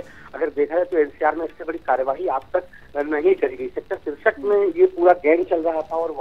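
A man talking over a telephone line, the voice thin and narrow in pitch range, speaking continuously.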